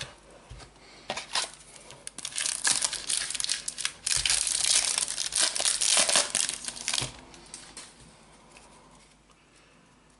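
Foil wrapper of a Panini Adrenalyn XL trading card pack crinkling and tearing as it is opened by hand. The crackling is densest and loudest for about three seconds in the middle, then dies away.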